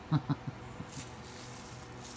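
A man's laugh trailing off, then from about a second in a faint, even hiss of dry seasoning rub pouring out of a stainless steel bowl onto the meat.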